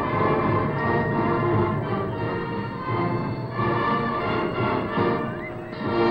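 Massed marching bands playing a tune together, with long held chords, on an old recording with dulled treble.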